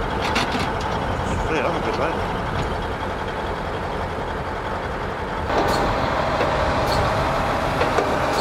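Heavy tow truck's diesel engine running, stepping up in level and pitch about five and a half seconds in as it is revved to work its lift under the burnt-out trailer.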